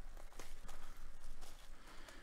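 Plastic shrink wrap being torn off a trading-card box, with faint, irregular crinkling and rustling.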